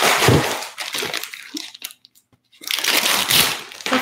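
Crinkly plastic packaging of a dialysis needle being torn open and handled, in two bouts with a short pause about two seconds in.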